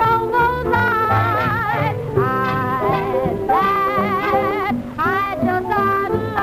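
A woman singing a vintage popular song in a strong vibrato, phrase after phrase, over instrumental accompaniment, with a short breath-gap just before the last phrase.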